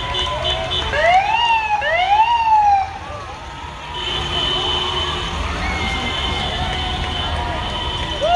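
Police car siren sounding in short rising-and-falling sweeps, about one a second, from about one to three seconds in, with voices shouting around it.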